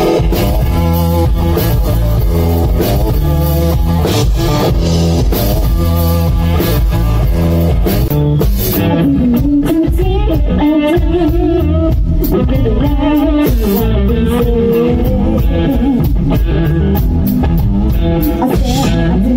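Live blues band playing electric guitar and drum kit, with a woman's voice singing from about halfway through.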